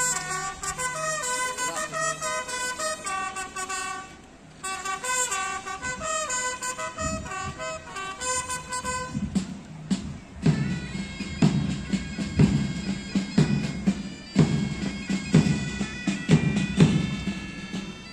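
Ceremonial band music at a flag hoisting. A wind-instrument melody of held notes plays first. From about ten seconds in, a band with steady drum beats takes over.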